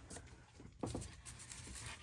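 Faint handling noises as a bare aluminium Honda B18C5 cylinder head is turned around on a cardboard-covered bench, with light rubbing and a small knock just under a second in.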